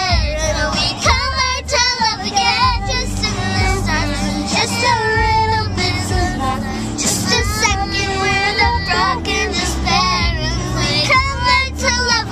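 Two young girls singing together inside a moving car, with a steady low road rumble underneath.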